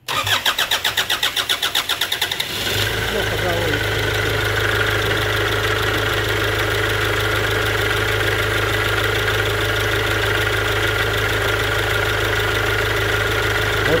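Starter cranking a Kia Sportage 2's two-litre four-cylinder common-rail diesel in rapid even pulses, the engine catching after about two and a half seconds and settling into a steady idle. It idles with its injector return lines feeding syringes for a back-leak test.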